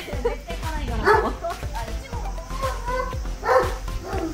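Doberman barking twice, about a second in and near the end, over background music.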